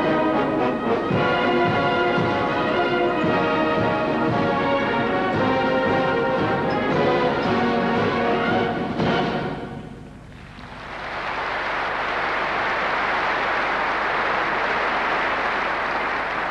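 Massed military bands play with clarinets and brass, ending on a final chord about nine seconds in. Audience applause then builds and carries on steadily.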